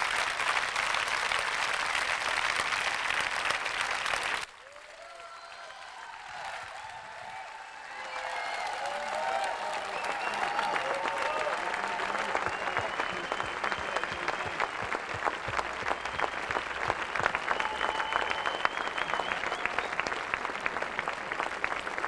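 Large audience applauding. The clapping drops suddenly about four and a half seconds in, a few voices come through the quieter stretch, and then the applause builds back up and carries on steadily.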